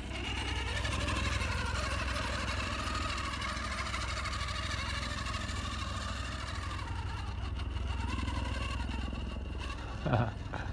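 Electric motor and geared drivetrain of an RC rock crawler whining steadily as it climbs a steep rock slope, over a steady low hum. The whine drifts in pitch and thins out in the last few seconds.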